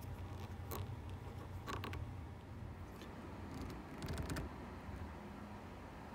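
A few faint clicks and taps from hands pushing black shifter knobs onto a Porsche 911's gear lever and a small floor lever, with a steady low hum underneath.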